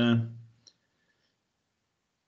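A voice trailing off on a drawn-out hesitant 'uh' for the first half second, then one faint click, then near silence.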